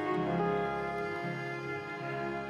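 Slow bowed-string music, cello and violin, in long held notes.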